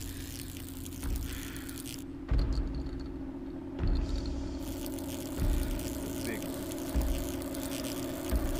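Horror film soundtrack: a steady low hum with deep thuds about every second and a half.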